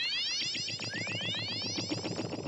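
Synthesized dream-sequence transition effect: a shimmering run of overlapping rising glides, repeating a few times a second, with no speech.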